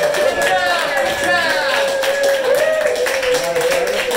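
Fiddle holding long, slightly wavering notes over steady strumming on an acoustic guitar.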